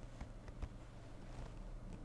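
A few faint taps and clicks of fingers handling a smartphone and tapping its screen, over a low steady hum.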